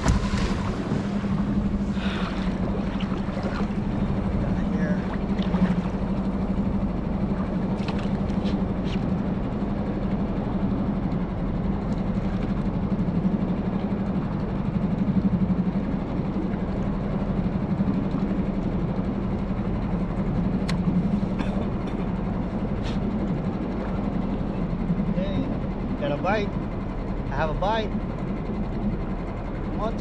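A small outboard motor on an inflatable skiff running with a steady low hum over wind and water noise. The hum weakens near the end.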